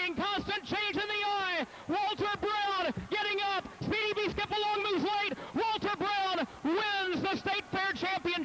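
Only speech: a male race announcer calling the race.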